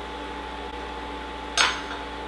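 A single short clink about one and a half seconds in, as a small glass bowl is set down on a stone countertop, over a steady background hum.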